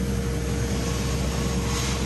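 Sand-blast cabinet nozzle blasting abrasive at a metal part, stripping off its coating: a steady, loud hiss of air and grit over a constant hum.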